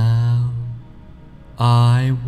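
A man's slow, low, monotone voice drawing out words in the measured style of a hypnosis induction, in two stretches: one fading out just under a second in, the next beginning near the end.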